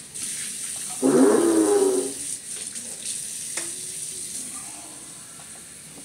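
A child's loud wordless vocal sound, like a shout or growl, lasting about a second and starting about a second in. After it come quieter room noises with a single sharp click.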